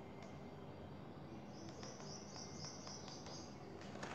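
Faint handling and flicking of paperback pages being turned. Partway through comes a rapid run of high chirps, about six a second, lasting about a second and a half.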